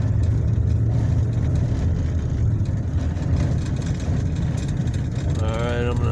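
Steady low rumble of a vehicle driving on a dirt road, heard from inside the cab: engine and tyres running on the unpaved surface. A voice starts speaking near the end.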